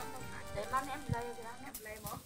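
Faint, indistinct voices of people talking, with soft music underneath.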